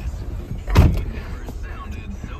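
A single heavy thump about a second in, typical of the minivan's driver's door being pulled shut from inside, over a steady low rumble in the cabin.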